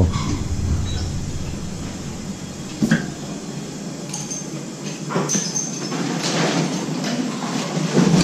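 Metal spoons clinking against steel seasoning bowls and a wok as seasonings are added to a pot of malatang broth, a few sharp clinks over a steady kitchen hiss.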